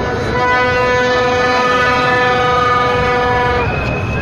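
A horn sounding one long steady note for about three seconds, over the noise of a large crowd; another, higher note starts near the end.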